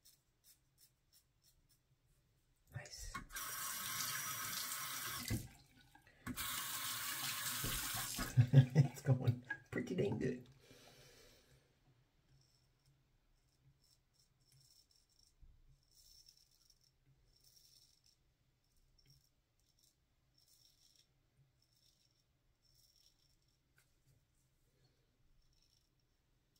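A bathroom tap runs in two bursts of several seconds each as a Feather SS shavette is rinsed of lather, then come a few loud knocks and splashes at the sink. After that come faint, short scraping strokes of the shavette blade over lathered stubble on the neck.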